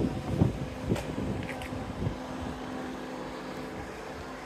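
Wind gusting on a phone microphone, with low rumbling buffets in the first couple of seconds, then settling to a low steady hum.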